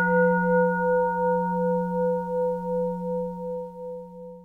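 A bell struck once rings out with a low hum and a few higher overtones. Its tone wavers as it slowly fades.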